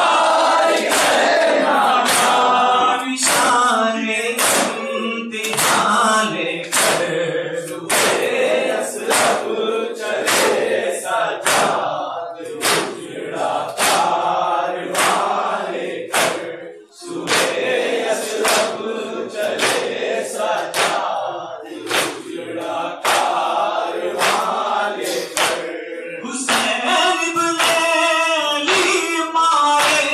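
Group of men chanting a noha (Shia lament) in chorus, led through a microphone, with sharp strikes of chest-beating (matam) keeping an even beat a little faster than one a second. The chant and beating drop away briefly about 17 seconds in, then resume.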